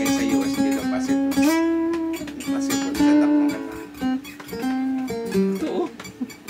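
Elegee Adarna steel-string acoustic guitar (solid Sitka spruce top, rosewood back and sides, phosphor bronze strings) played unplugged: a plucked melody of ringing single notes, with a few notes sliding in pitch near the end.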